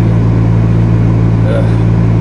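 Steady low hum of a car engine idling, heard from inside the cabin, with a short spoken "uh" near the end.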